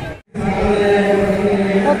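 Voices chanting in unison, holding one long steady note, which comes in after a brief gap of silence just after the start.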